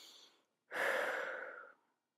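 A woman's audible breathing: a faint inhale, then a long breathy exhale like a sigh, about a second long, fading out.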